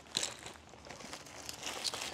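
Quiet rustling and crinkling of a small toiletry bag and its contents being rummaged by hand, with two light clicks, one just after the start and one near the end.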